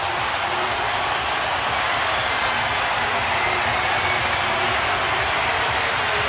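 Large stadium crowd cheering in a steady, loud wash of noise, celebrating a goal just set up by Messi for Agüero.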